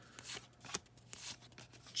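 Baseball trading cards being slid one behind another in the hand: faint rubbing of cardstock with a few light flicks.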